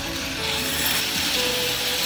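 Rows of metal rollers on a long roller slide rattling steadily under riders sliding down, growing fuller about half a second in.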